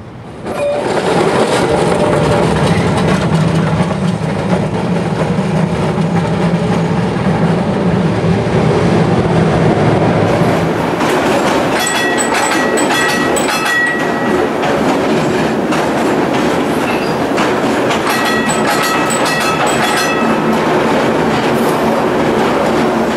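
Muni K-type streetcar 178 running on rails: a steady rumble and hum with wheel clatter, starting about half a second in. A high-pitched whine or squeal of steady tones comes in about halfway through and again near the end.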